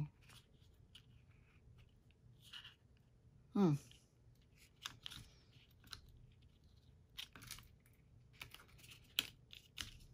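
Faint, scattered rustles, crinkles and small scrapes of a paper book signature being handled while it is hand-sewn with waxed thread.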